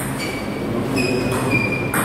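Sports shoes squeaking on a wooden hall floor as table tennis players shift their feet: several short, high squeaks at different pitches.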